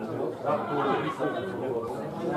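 Several men's voices talking over one another in indistinct chatter.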